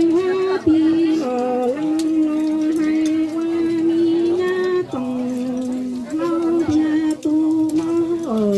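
A Hmong kwv txhiaj folk song sung solo, the voice holding long, level notes and stepping down to a lower note twice before climbing back.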